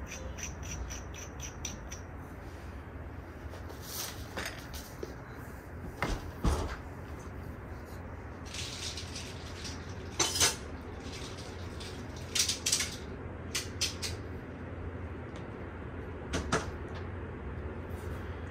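Hookah parts and hose being handled and fitted together: scattered light clicks and knocks of metal and plastic, with a fast run of faint ticks near the start and a brief rustle about halfway through.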